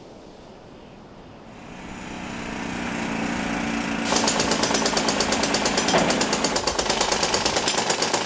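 Pneumatic rock drill hammering into stone, a rapid, steady, machine-gun-like chatter. It swells in after a quiet start and is at full strength from about four seconds in.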